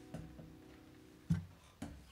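The last strummed chord of an acoustic guitar fading away, with a few knocks on the guitar as it is handled: two soft ones near the start, a louder thump about a second and a half in, and one more near the end.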